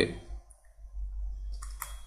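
Soft clicks, clustered near the end, over a faint low steady hum.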